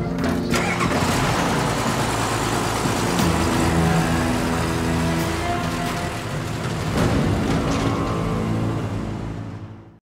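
Military cargo truck's engine running as the truck pulls away, under a steady orchestral music score; everything fades out near the end.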